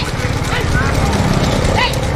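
Running bulls' hooves clattering on the tarmac, with the cart rig rattling and a motor running underneath. Short high rising-and-falling calls cut through every half second or so.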